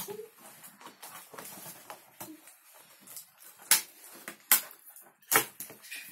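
Scissors cutting the toy's cardboard and plastic packaging: soft rustles and clicks, then three sharp snips about a second apart in the second half.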